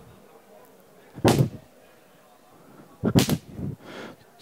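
Homemade whip of broom handle, climbing rope and bootlace cracked twice, about two seconds apart. Each crack is sharp and short. The crack is the signal that tells hunting hounds to stop what they are doing.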